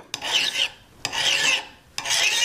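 Coarse zero-cut hand file rasping across the flat metal face of a jeweller's prong pusher, in two strokes of about half a second each, truing the face and knocking down its burred edges.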